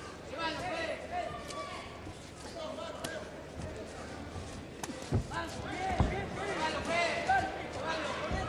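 Shouting from the boxing crowd and corners, with two dull thuds about five and six seconds in, the second the louder: blows landing or feet on the ring canvas.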